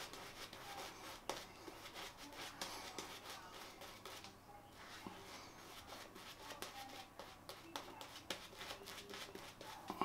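Silvertip badger shaving brush working soap lather over a stubbled face: faint, quick swishing strokes, with a short pause a little before halfway.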